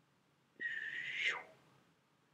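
A person whistles one short note, held briefly, then gliding sharply down in pitch.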